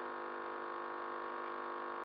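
Low, steady electrical mains hum with a stack of many overtones, unchanging throughout.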